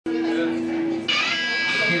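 Electric guitar ringing: one held note for about a second, then a brighter, higher chord struck that sustains.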